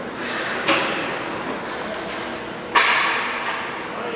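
Two sharp hockey impacts of stick and puck, about two seconds apart, the second louder, each echoing through the indoor rink over a steady murmur of arena noise and distant voices.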